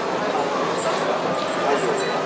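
Indistinct talking of many people at once, a steady background of crowd chatter with no single clear voice.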